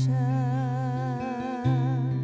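A woman singing a long held note with vibrato, accompanied by acoustic guitar, with a new guitar chord struck about one and a half seconds in.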